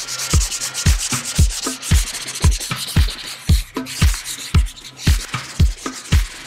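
Background music with a steady kick-drum beat, about two beats a second, over the scratchy rubbing of emery paper sanding a plastic kart side pod.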